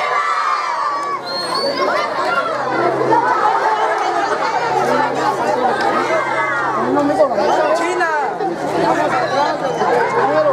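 A crowd of teenagers chattering as they walk, many voices talking over one another at once.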